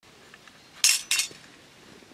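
Metal spoons clinking twice against each other and a terracotta dish as they are set down, two short ringing clinks about a third of a second apart.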